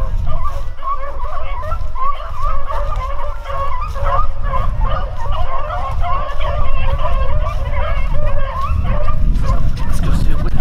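A pack of beagles baying together on a rabbit's track, many overlapping voices throughout, over a low rumble of wind and handling noise on the microphone.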